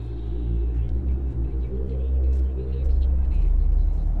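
A deep low rumble that swells toward the end, with steady music tones above it.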